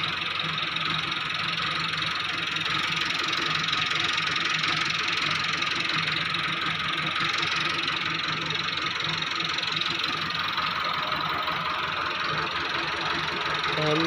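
A machine runs steadily: a constant low hum under an even higher hiss, with no change in speed or pitch.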